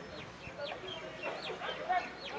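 Several short, quick bird calls, each sweeping down in pitch, with faint distant voices behind them.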